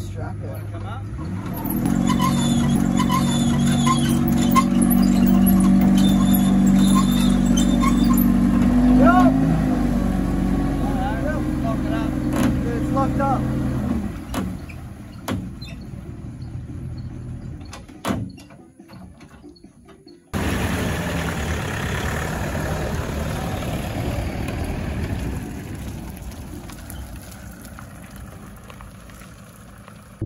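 A vehicle engine running steadily, with short squeaks and clicks from a boat trailer's hand winch being cranked as the boat is pulled onto the trailer. About twenty seconds in the sound changes abruptly to a quieter, even noise.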